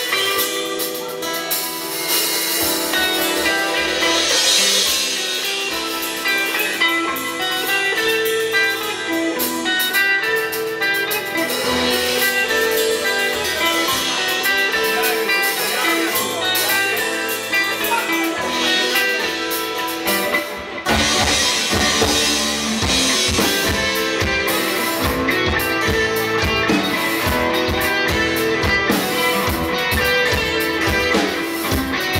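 Live rock band playing with electric and acoustic guitars, bass and drum kit. The drums come in much harder about two-thirds of the way through.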